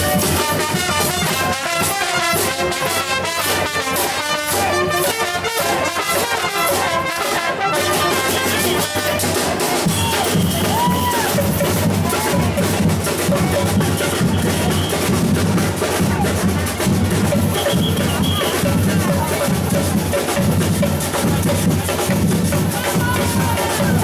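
A street band playing for the parade: brass carrying a melody over drums. About eight seconds in the brass thins out and the drums carry on with a steady beat.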